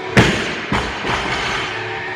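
A loaded barbell with bumper plates dropped onto the gym floor: a heavy thud, then a second, lighter bounce about half a second later, over background music.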